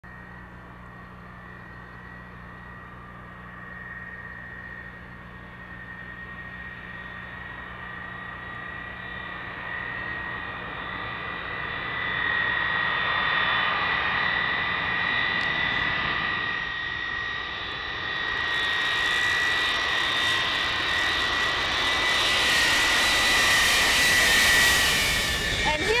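Lockheed C-5 Galaxy's four turbofan engines coming in to land: a steady high whine that grows louder throughout, with a rushing roar building over the second half.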